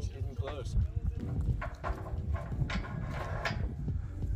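Wind buffeting the microphone in a low, uneven rumble, with faint voices of people talking nearby.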